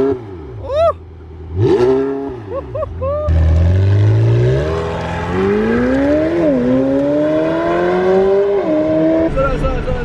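McLaren 720S twin-turbo V8 revved twice while standing, then launched and accelerating hard. The engine note climbs steadily, with a dip at an upshift about six and a half seconds in and another near nine seconds.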